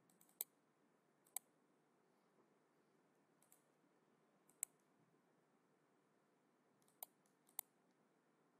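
Computer mouse clicking: about five single sharp clicks spaced a second or more apart, the last two close together, over faint room hiss.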